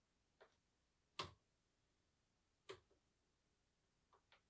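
Three separate sharp clicks from a laptop's keys, a faint one first and the loudest just over a second in, against near silence.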